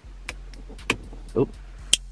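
Small plastic wiring-harness connectors being handled and pushed together: a few light clicks, then a sharp, louder click near the end as the stiff plug latches into its socket.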